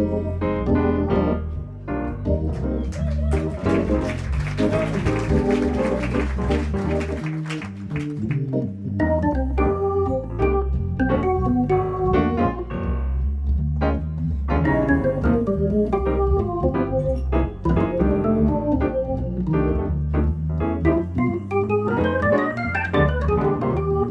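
Hammond organ playing a jazz ballad, with a dense low bass line under the melody and piano alongside in a live organ–piano duo. The playing gets busier and brighter from about three to eight seconds in.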